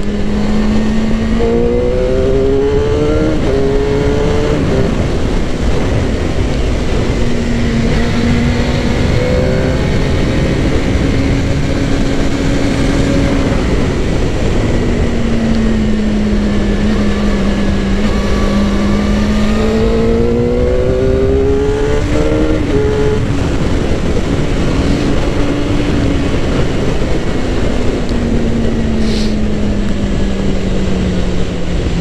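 Suzuki GSX-R600's inline-four engine running at road speed under a steady rush of wind noise. About two seconds in, and again around twenty seconds in, it revs up in short rising steps as it pulls through the gears, then settles back. Near the end the pitch falls away as it slows.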